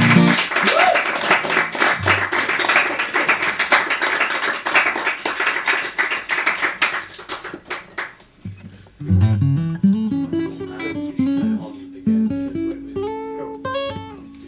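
Small audience clapping, which fades out after about seven seconds; then, about eight seconds in, an acoustic guitar starts fingerpicking single notes, with one note held under the later ones.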